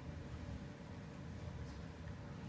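Quiet room tone in a pause: a steady low rumble with faint hiss, and no distinct sound event.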